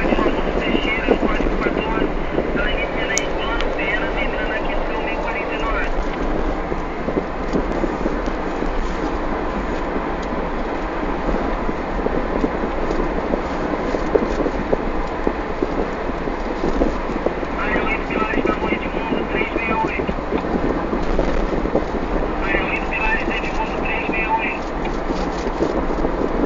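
Steady running and road noise of a car on the move. Faint, indistinct voices or chatter come and go a few times.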